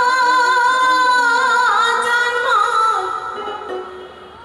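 A woman singing a Bhawaiya folk song into a microphone: a long high note held with a slight waver, which then steps down in pitch and fades away near the end.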